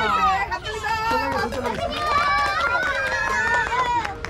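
Several people's raised voices calling out over one another, high-pitched and excited.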